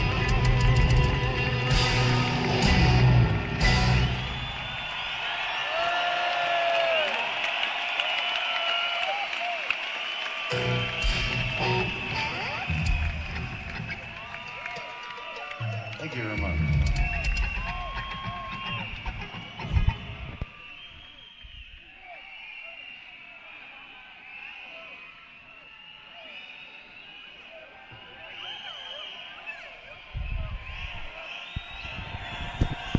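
Rock band live in an arena ending a song with heavy guitar and drums in the first few seconds, then the arena crowd cheering, shouting and whistling, with a few more band hits, dying down toward the end.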